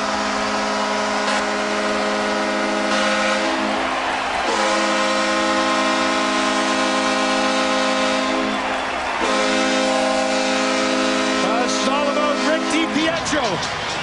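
Arena goal horn sounding in three long blasts over a cheering crowd, marking a home-team goal; the horn stops near the end.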